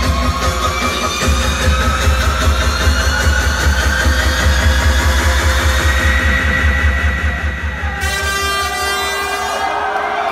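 Electronic dance music from a DJ set played loud over a club sound system: a heavy, pulsing bass beat under rising synth tones. About eight seconds in the bass cuts out and a rising sweep builds toward the drop.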